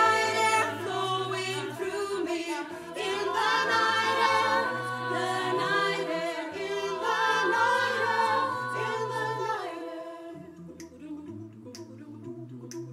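Mixed a cappella choir singing sustained wordless chords over a low bass line. Near the end the full chords drop away, leaving a quieter hum and a few sharp clicks about a second apart.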